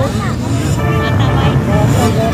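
Motocross dirt bike engines running on the track, with a crowd's voices over them.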